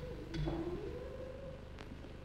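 A single voice holding a soft note that slides upward and then holds, part of the sung opera performance, with a thump about half a second in and a faint click near the end.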